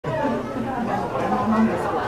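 Chatter of several people talking indistinctly at once.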